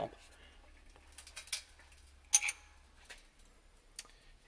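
Wood fibres cracking under the ram of a 12-ton hydraulic press: a few short, sharp ticks and cracks spread over a couple of seconds, the loudest about halfway through, as the ram crushes into a glued walnut-and-maple block.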